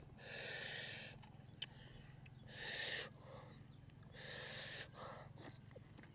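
Three loud, noisy breaths by a man, each half a second to a second long and about two seconds apart, with a few faint clicks between them.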